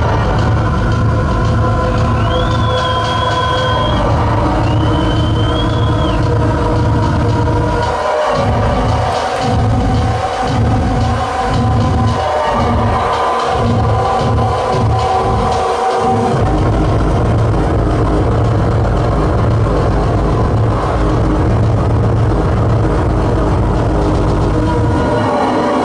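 Loud electronic music from a live set played on a laptop and pad controller, with a heavy sustained bass. A high synth line sounds twice near the start, and midway the bass is chopped into rapid stutters for several seconds before it runs steady again.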